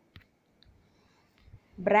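A short pause in speech, quiet except for one faint sharp click just after the start and a fainter tick soon after; a voice starts talking again near the end.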